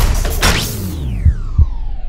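Electronic logo-sting sound effect: a whoosh about half a second in, then a tone gliding steadily down in pitch. Near the end come two low thumps close together, like a heartbeat.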